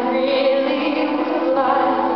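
Live string orchestra of violins, violas and cellos playing sustained chords, with a high wavering melody line on top and a rising phrase near the end.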